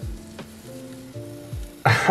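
Water and wet substrate dripping and trickling off the roots of an aquarium plant just pulled up out of the tank's substrate, a faint crackly patter. Under it runs background music with held notes and two soft bass beats.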